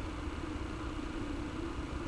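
Low rumble and hiss of a live room recording, with a faint steady low tone held throughout.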